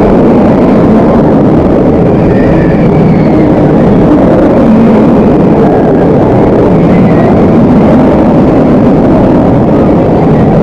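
Nemesis, a Bolliger & Mabillard inverted steel roller coaster, running at speed: a loud, steady rush of wind and track noise heard from the front seat.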